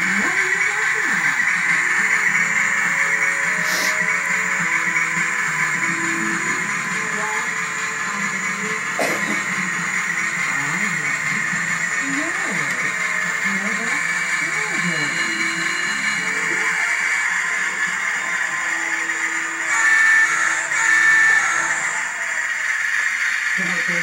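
A television playing in the background: music with a voice over it, and a steady hiss throughout. A couple of faint clicks stand out early on, and the sound swells briefly near the end.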